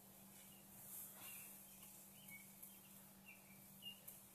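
Near silence: room tone with a steady low hum, and a few faint short high chirps and light clicks.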